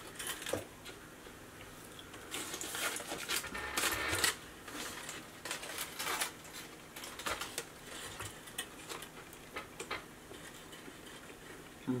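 Crinkling and rustling of fast-food wrappers and packaging as burgers and fries are handled at a table, in irregular short bursts with small clicks and taps; the longest stretch of rustling comes in the first half.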